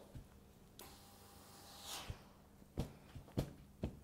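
Faint handling sounds of a wooden tailor's clapper on a padded ironing table: a soft rustle of cashmere about two seconds in, then a few quiet knocks near the end as the clapper is lifted and set down, over a low steady hum.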